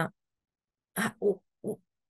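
A woman's voice over video-call audio: a drawn-out 'uh' ends, about a second of dead silence follows, then three short hesitant syllables.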